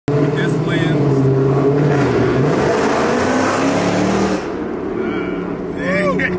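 Car engine and exhaust pulling hard under acceleration, heard loud from inside the cabin, easing off about four seconds in. A man's voice and laughter come in near the end.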